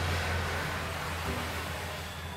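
A steady low hum under an even hiss: background room tone.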